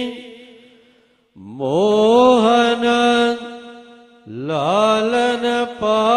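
A male ragi singing Gurbani kirtan in long held, wavering notes. The first note fades out about a second in. Each new phrase then slides up from low into a sustained note, once just after a second in and again past four seconds.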